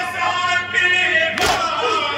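A crowd of men chanting a nauha, a Shia lament, together in loud chorus, with one sharp slap about three-quarters of the way through, a beat of the chest-beating matam.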